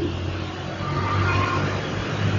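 A low, steady hum, with a faint higher tone joining about halfway through.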